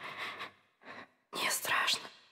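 Whispering in short breathy stretches with no clear words: one trails off about half a second in, a brief one comes about a second in, and a longer, louder one begins near the end.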